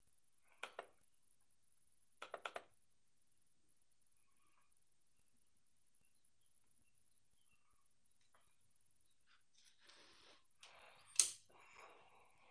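Quiet room with a few short clicks: two together about half a second in, four in quick succession around two seconds in, then soft rustling and one sharp, louder click near the end. A faint, steady high-pitched whine sits under it all.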